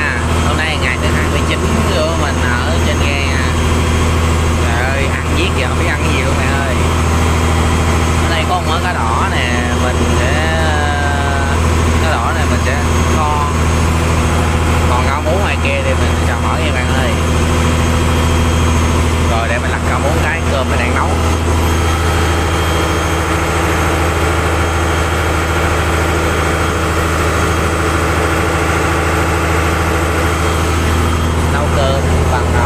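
A boat's engine running steadily while the boat is under way at sea: a continuous, even low drone.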